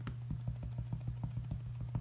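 A rubber stamp on a clear acrylic block tapped rapidly and lightly onto a Merry Merlot Classic Stampin' Pad to ink it, about six soft taps a second, over a steady low hum.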